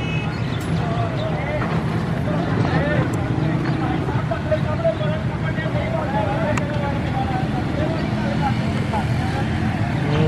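Street noise: several people talking in the background over the steady low rumble of vehicle engines, with no train passing.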